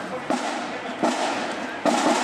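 Marching band drums beating a slow, steady march cadence: three sharp hits about three-quarters of a second apart, with voices in the background.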